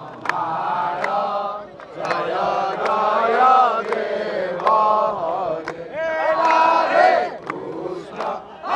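A group of men chanting a devotional hymn together in sung phrases, punctuated by sharp hand claps.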